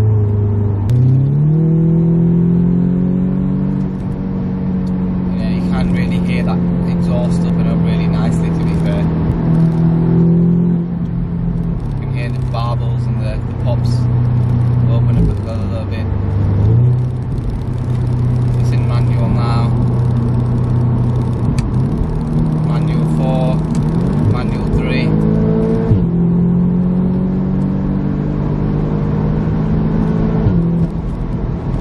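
Audi S3 8V's turbocharged four-cylinder engine and resonator-deleted exhaust heard from inside the cabin at motorway speed, with the gearbox in sport mode. The engine note climbs about a second in and holds high, drops at a gear change about eleven seconds in, then climbs again a few seconds later and rises further toward the end.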